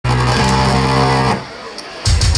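A live band's distorted electric guitar and bass holding one low chord through the amplifiers, which cuts off sharply a little over a second in. A quieter wash of hall noise follows.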